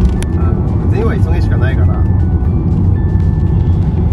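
Steady low drone of road and engine noise inside a moving car's cabin, with music and a voice-like melody over it about a second in.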